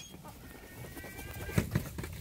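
Herring gulls calling faintly, with thin drawn-out cries, and a short low sound about one and a half seconds in.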